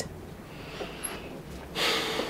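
A person breathing: a faint breath about half a second in, then a louder, short breath out near the end.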